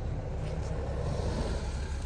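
Outdoor background noise: a steady low rumble of road traffic with a faint hiss.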